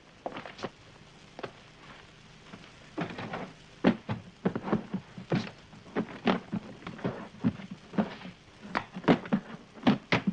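A series of irregular knocks and thuds, sparse at first and coming about one or two a second from about three seconds in.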